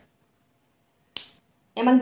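A single short, sharp click a little over a second in, in an otherwise near-silent pause.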